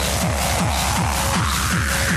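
Hard techno track with a fast, steady kick drum and hi-hats. A synth sweep rises over the second half.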